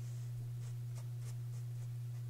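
Paintbrush scratching acrylic paint onto canvas in a few short strokes, over a steady low hum.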